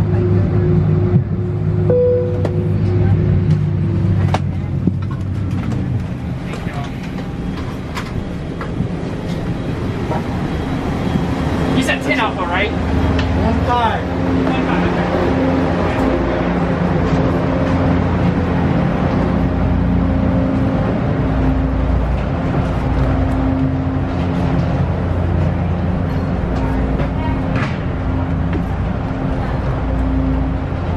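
Steady hum of a parked airliner's cabin at the gate. It gives way to jet-bridge ambience: a steady drone, scattered footstep-like clicks and background voices of passengers walking off the plane.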